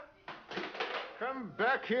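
A man's voice shouting loudly in the second half, after a brief near-silent gap and some quieter, indistinct sounds.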